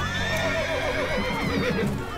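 A horse whinnying: one long call whose pitch shakes and wavers, falling away near the end.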